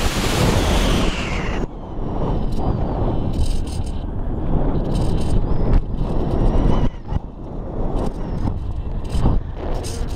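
Air rushing over the microphone of an onboard camera on a 2 m balsa RC glider in flight: loud, buffeting wind noise that swells and drops back every second or two.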